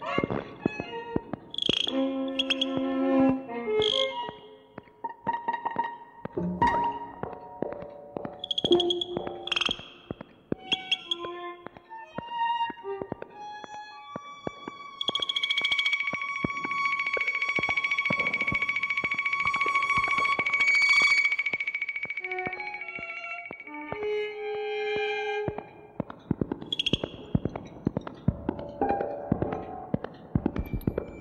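Early-1970s live electronic music for violin and analogue electronics: scattered short pitched notes and high squeals, then about halfway through a high tone held for some eight seconds before the scattered notes return.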